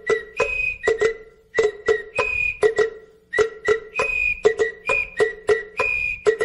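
Instrumental music beginning: a quick, even rhythm of short, sharply struck notes, with a higher held note recurring over them.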